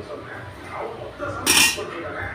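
Slotted spatula stirring and scraping through thin tomato curry gravy in a metal kadai, then one short, loud clatter of the spatula against the pan about one and a half seconds in.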